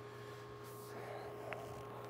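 Quiet room tone with a steady electrical hum, and one faint short tick about one and a half seconds in.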